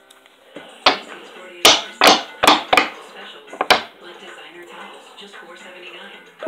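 A hard plastic trading-card case being handled and opened, with six sharp clacks and knocks over about three seconds as the Pokémon cards are taken out.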